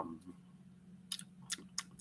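A few faint, short clicks, four or five of them in the second half, over a low steady hum.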